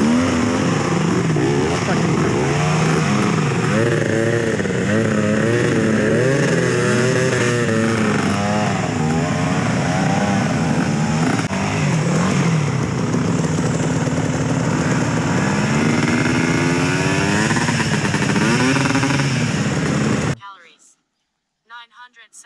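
Several dirt bike engines revving hard, their pitch rising and falling as they pull through deep mud. The sound cuts off suddenly near the end.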